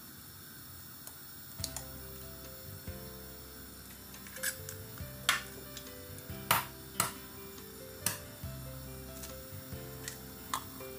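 Background music comes in about a second and a half in. Over it are several sharp, irregular taps of eggshells being cracked against the rim of a ceramic bowl, the loudest two close together in the middle.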